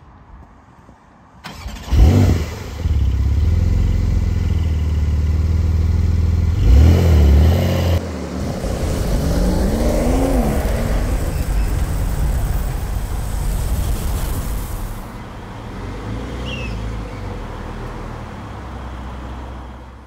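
Porsche 911 Carrera GTS (992) twin-turbo flat-six with sport exhaust starting up with a loud flare about two seconds in and settling into a fast idle. It revs briefly around the seventh second, then pulls away with the engine note rising as it accelerates, and runs lower and quieter for the last few seconds.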